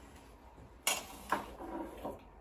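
A metal spoon clinks twice against the kitchenware, about a second in and again half a second later, as sugar is spooned from a glass jar into a saucepan.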